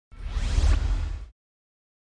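Whoosh sound effect with a deep low rumble, rising in pitch over about a second and cutting off suddenly.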